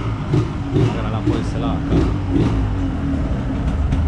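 A 1997 Yamaha DT200's two-stroke single-cylinder engine running and being revved in quick, repeated throttle blips, then settling to a steadier note near the end.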